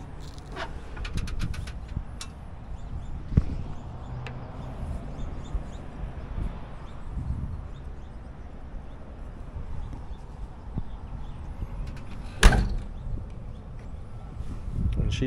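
A car trunk lid being shut: a few soft knocks and clicks of handling, then a single loud slam about twelve and a half seconds in as the lid latches.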